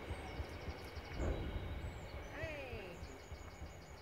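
Faint low rumble as the tail of a biomass freight train passes away, with a run of light high ticks in the first second. A short falling call comes about halfway.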